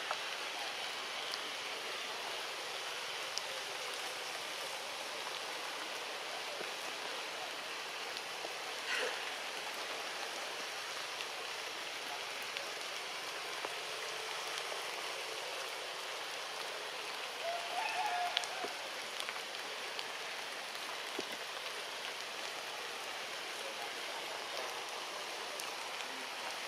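Steady rushing forest background noise, even and unbroken, with a short faint call about nine seconds in and another, slightly louder, around eighteen seconds in.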